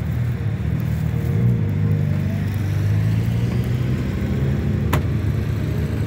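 Low, steady rumble of motorcycle engines idling close by, with a single sharp click about five seconds in.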